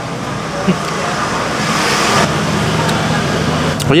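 Street traffic noise with a steady low hum. A vehicle passes, swelling to its loudest about two seconds in and then dropping off sharply.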